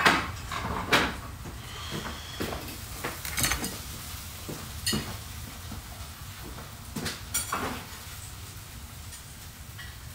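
Dishes and cutlery clinking and knocking while food is being plated: a sharp clatter at the start, then scattered knocks every second or so, with another cluster about seven seconds in.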